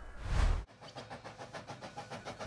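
A rising whoosh with a low rumble that cuts off suddenly about two-thirds of a second in, then the fast, even chugging of a steam locomotive sound effect.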